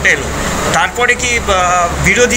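A man speaking into a bank of microphones, pausing briefly about half a second in, over a steady low hum.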